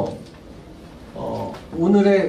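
A quiet pause with room tone, then a short soft vocal sound and a man's voice starting to speak near the end.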